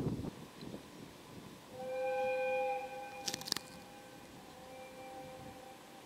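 JR Freight EF210 electric locomotive horn sounding the departure signal: a loud steady blast of about a second, then a fainter, longer blast in answer between the lead and banking locomotives. A few sharp clicks come in between.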